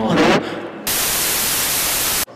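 TV static hiss, as on a television with no signal. It starts suddenly a little under a second in, holds loud and steady, and follows the fading end of the intro music.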